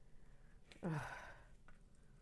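A woman's exasperated "ugh", a short groan falling in pitch and trailing off into a breathy sigh about a second in, with a couple of faint clicks.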